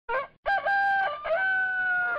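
A rooster crowing: a short first syllable, a broken phrase, then a long held note.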